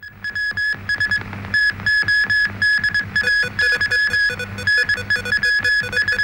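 Electronic TV news opening theme music: a fast, evenly repeating pattern of short synthesizer beeps, with a lower note joining about three seconds in.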